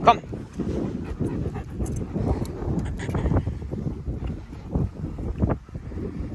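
A short command called to a German Shepherd at the start. After that, wind buffets the microphone while the leashed dog moves along beside the handler.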